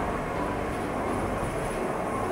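Electric rack railcar of the Pilatus Railway running steadily up the mountain, a continuous rumble and hiss heard from on board.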